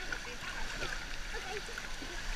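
Steady wash of moving water and small splashes in a swimming pool, heard close to the water surface, with faint voices in the background.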